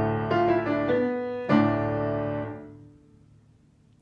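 Piano playing a short phrase: a held chord with a few quick notes moving over it, then a second chord struck about one and a half seconds in that rings and fades out, leaving near silence for the last second.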